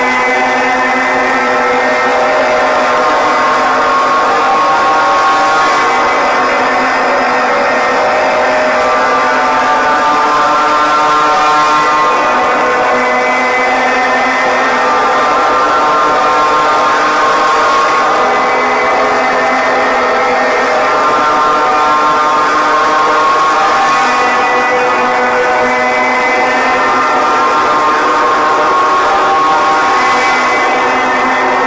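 A loud, steady drone soundtrack made of many held tones: a constant low note underneath, with the upper notes shifting slowly in a cycle about every six seconds.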